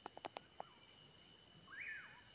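Insects trilling steadily at a high pitch, with a few soft clicks in the first half and a short bird call that rises and falls near the end.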